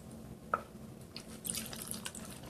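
A drink poured from a glass into a plastic blender cup of cut fruit, with a single drip-like plop about half a second in, then faint splashing of liquid over the last second.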